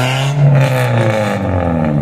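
Toyota Corolla E140's engine and exhaust as the car drives away, a steady engine note that lifts briefly about half a second in and then falls slowly in pitch.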